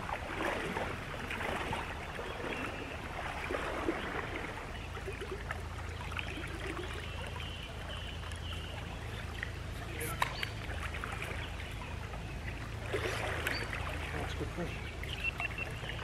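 A small stream flowing steadily, with a low rumble underneath. A faint voice mutters now and then, and there is a single sharp click about ten seconds in.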